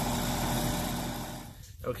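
Outdoor air-conditioning condensing unit running, its compressor and fan giving a steady hum, which dies away about one and a half seconds in. The R22 system is running on R-407C refrigerant with POE oil freshly added to its suction line. A man says "okay" at the very end.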